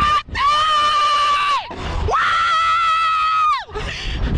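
A rider on a Slingshot reverse-bungee ride screaming twice, each a long, high, held scream of over a second, with wind rushing on the microphone.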